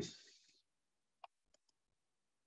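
Faint clicks of a computer mouse against near silence: one sharper click about a second in and two softer ones shortly after.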